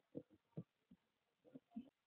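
Near silence, with four faint, short low thuds spread through it.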